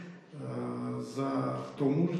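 A man's voice, drawn out and nearly level in pitch, starting after a brief pause.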